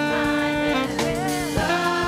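Live worship music: a woman singing with held notes over sustained electric keyboard chords.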